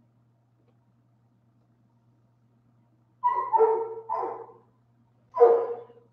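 A dog barking: a quick run of barks about three seconds in and another bark near the end, over a faint steady hum.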